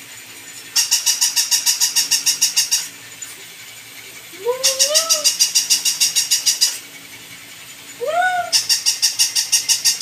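Battery-operated plush walking toy dog running in on-off cycles: three bursts of about two seconds of fast, regular clicking, about eight clicks a second, with short pauses between. Two short high whines that rise and fall, one about halfway through and one near the end.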